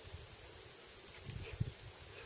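Faint, steady pulsed chirping of field insects, with soft low rumbles and a small thump about one and a half seconds in.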